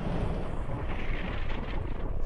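A steady low, rushing rumble: a sound effect for an asteroid plunging through the atmosphere toward impact.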